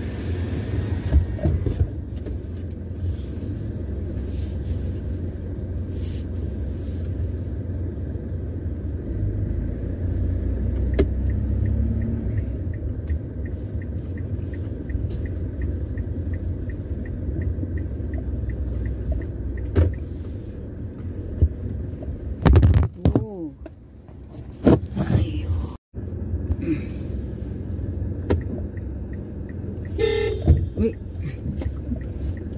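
Steady low rumble of a car driving slowly, heard from inside the cabin. A quick, regular ticking runs for several seconds in the middle, and a few louder bumps come near the end.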